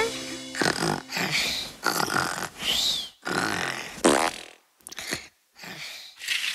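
A string of short comic cartoon sound effects, breathy noisy bursts about one to two a second, a few with squeaky pitch glides (one rising and falling high, one sliding down low a little past the middle), spaced wider and fainter towards the end.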